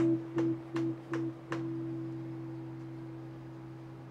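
Semi-hollow electric guitar playing five short plucked notes at about three a second, then a last note left to ring out and fade slowly.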